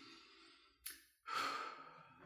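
A man breathing out audibly: a soft breath, a short click, then a louder sigh in the second half.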